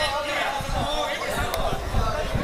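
Indistinct voices of people talking and calling out on the field, with a sharp click about one and a half seconds in.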